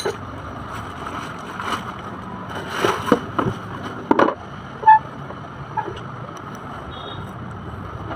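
Clear plastic packaging crinkling and rustling, with a few handling knocks, as a plastic ride-on swing car is pulled out of its wrap and set upright. There is a brief squeak about five seconds in.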